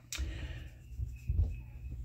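Handling noise from a paperback book as a page is turned: a sharp click at the start, then low rubbing and bumping with a thump about a second and a half in.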